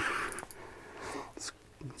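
Faint handling noise from a spinning reel being cranked against a fish on the line: soft rustling with a few light clicks, among breathy, half-spoken sounds.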